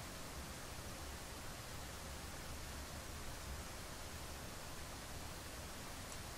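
Faint steady hiss with a low hum underneath: room tone, with no distinct sound events.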